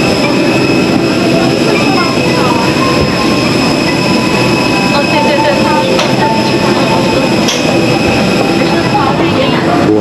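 Steady cabin noise inside a parked airliner during boarding: a constant rush of air from the ventilation with a thin, unchanging high whine, under a murmur of passengers' voices.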